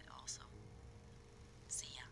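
Faint whispered speech: a short breathy falling syllable at the start and a hissing sibilant near the end, over a low steady hum.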